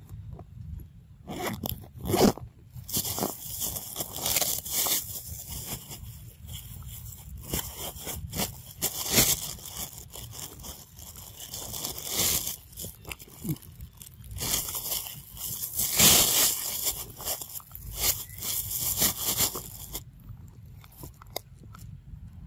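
Close, irregular crunching and rustling in repeated loud bursts, dying away near the end.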